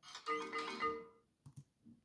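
A short musical jingle of about three notes, lasting about a second, with a ringtone-like quality. A few faint clicks follow near the end.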